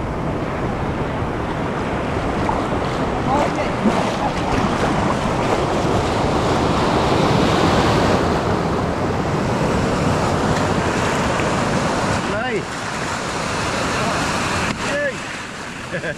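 Shallow surf washing and foaming over the sand, a steady rush of water that swells a little louder midway through.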